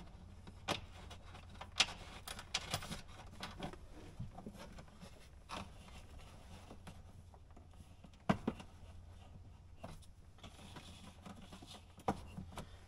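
Scattered light clicks and taps of small screws, washers and nylock nuts being handled and fitted by hand into a plastic dash panel, the sharpest about two seconds in and again past eight seconds.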